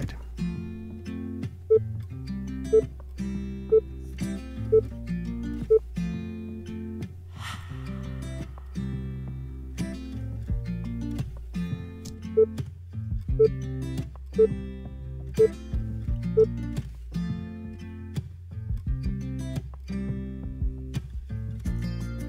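Background music with a plucked acoustic guitar and a steady beat.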